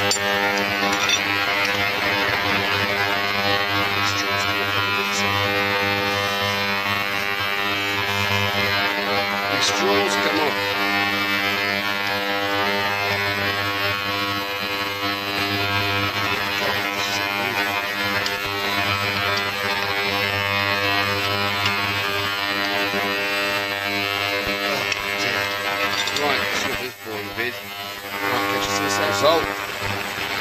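A steady droning hum with many even overtones, dipping briefly near the end, with a few faint clicks over it.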